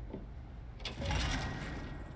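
Soundtrack of an animated show with no dialogue: a low steady hum, and about a second in a whoosh of noise that swells and fades.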